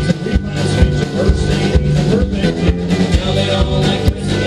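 Live alt-country band playing a song with electric guitar, pedal steel guitar, upright bass and drums, over a steady beat.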